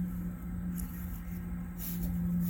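Braided rope rustling and scraping as it is worked through a half-hitch knot and pulled tight, in a couple of brief scrapes, over a steady low hum and a low rumble.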